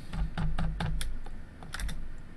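Computer keyboard keys and mouse buttons clicking, scattered taps at irregular intervals, with a low thud or two under them in the first second.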